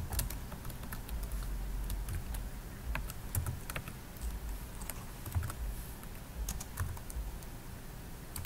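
Typing on a computer keyboard: irregular, unhurried key clicks with short pauses between them.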